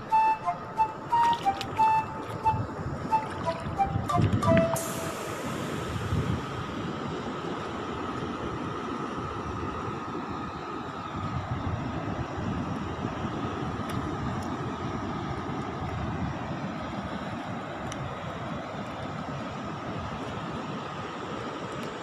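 A short melody of background music ends about five seconds in. It gives way to a steady rushing sound of surf.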